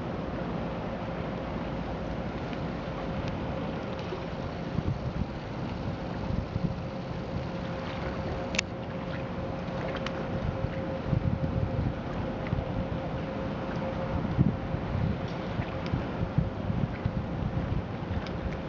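A Splashtours amphibious bus cruising on the river, heard as a faint steady hum under the wash of water. Gusts of wind buffet the microphone from about five seconds in, and there is one sharp click about eight and a half seconds in.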